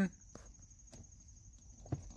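Faint handling sounds of a plastic clip-on car fan being pushed into its seat-back bracket: a few light ticks and taps, with a faint steady high-pitched whine underneath.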